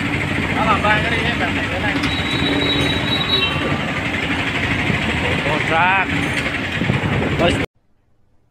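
Engine and road noise of a small truck moving through busy street traffic, heard from its open cargo bed, with brief shouts from a man's voice. The sound cuts off abruptly shortly before the end.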